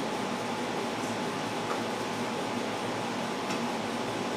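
Steady room tone: an even hiss with a faint steady hum, and no distinct events.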